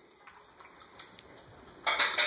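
Mallard duck dabbling its bill in a metal water bowl: faint ticks and drips, then a sudden louder burst of splashing just before the end.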